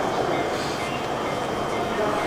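Steady noise from a JR East E231 series electric commuter train standing at a station platform.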